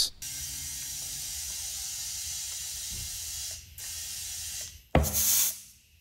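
A ratchet working the bolts of a beadlock ring: a steady run of about three and a half seconds, a fainter stretch after it, then a short, sharp hissing burst about five seconds in.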